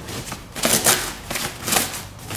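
A plastic packing bag rustling as a hand reaches in and handles it, in a few short crinkly bursts.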